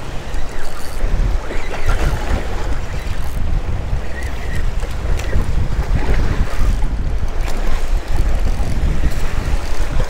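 Wind buffeting the microphone with a heavy low rumble, over waves washing against jetty rocks.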